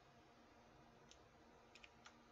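Near silence with room hiss, broken by a few faint short clicks: one about a second in and two close together near the end.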